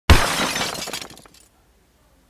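Glass shattering: one sudden crash, then scattered small pieces tinkling and dying away about a second and a half in.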